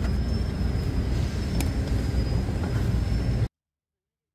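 Amtrak Cascades passenger train standing at the platform: a steady low rumble with a thin high whine over it and a single click about one and a half seconds in. The sound cuts off abruptly shortly before the end.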